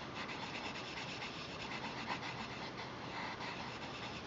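Brown coloured pencil shading on paper: a steady run of quick, short scratchy strokes of the pencil lead rubbing across the sheet.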